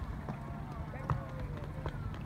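Faint, distant voices over a low rumble of wind and water on the microphone, with a couple of short knocks about one and two seconds in.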